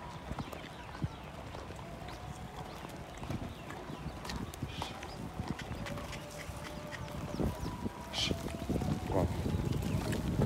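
A herd of goats moving along a dirt road: a patter of hooves and footsteps scuffing the ground, with faint calls in the background and a few short calls near the end.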